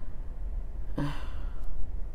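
A woman sighing once: a short voiced start about halfway through that trails off into a breathy exhale.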